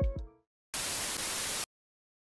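Background music rings out and fades in the first moment, then after a short silence a burst of even static hiss, a white-noise transition effect, lasts about a second and cuts off abruptly.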